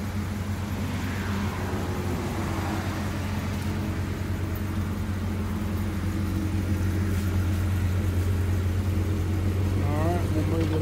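Jeep Grand Cherokee engine running at a low, steady idle-like speed, a constant low exhaust hum that grows a little louder in the second half.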